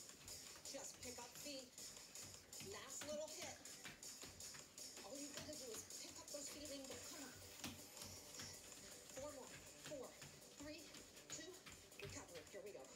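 Faint workout music with a voice talking over it, from an exercise video playing in the room. Light footfalls of someone stepping and jogging in place on a tiled floor run through it.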